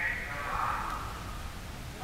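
Crowd noise in a reverberant indoor pool hall: a haze of distant voices with a few high voices calling out, fading over the first second and a half.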